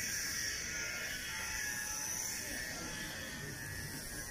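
A steady high-pitched buzz that holds level without pulsing.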